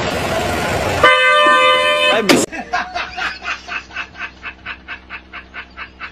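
A loud burst of noise, then a horn-like toot held for about a second that slides down in pitch as it cuts off. After it comes a fainter, even patter of short strokes, about three a second.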